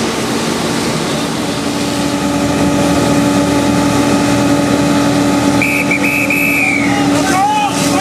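Fire engine's pump running steadily with hose jets spraying water: a continuous engine drone under a steady hiss of spray.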